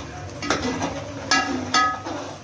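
A long metal spoon stirring in a metal cooking pot, striking the pot three times: once about half a second in and twice in quick succession past the middle. Each strike rings briefly.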